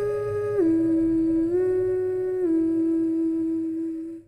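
A voice humming a slow melody in a few long held notes: a step down about half a second in, a rise about a second later, and a drop near two and a half seconds to a note that is held to the end.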